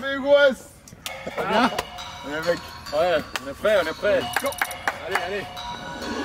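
Hip-hop track intro: a rapper's voice in short, pitched vocal ad-libs over sparse clicks.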